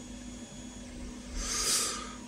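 Quiet room tone with a faint steady hum and soft handling noises from small resin figures turned in the fingers, then a short breath near the end.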